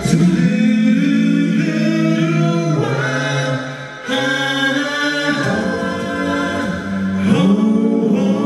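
Male a cappella vocal ensemble singing held chords in close harmony, several voices stacked with no instruments. There is a short dip just before four seconds in, then a new chord.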